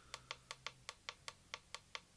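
Black+Decker variable speed pool pump's keypad controller ticking rapidly, about five ticks a second, as the down button is held and the speed setting steps down toward 1200 RPM. A faint low hum runs underneath.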